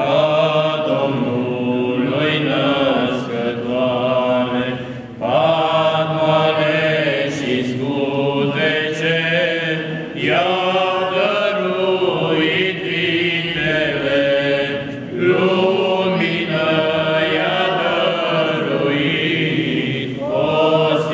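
A small group of voices, mostly men, singing a Romanian Christmas carol (colindă) unaccompanied, in phrases of about five seconds with short breaths between them.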